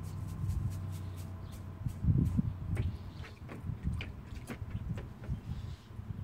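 A small pet pig moving about in shallow water in a plastic kiddie pool: low grunts, loudest about two seconds in, with scattered splashes and knocks as it steps and turns.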